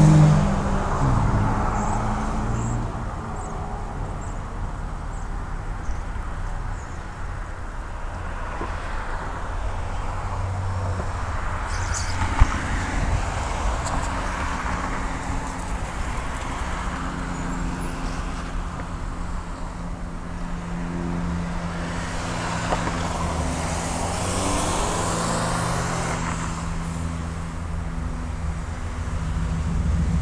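Road traffic at an intersection: vehicles passing in several swells over a steady low rumble, with a low engine hum through the second half. A single sharp click about twelve seconds in.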